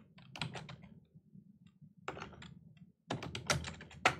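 Computer keyboard typing in three short runs of keystrokes with pauses between, the last run, near the end, the densest and loudest.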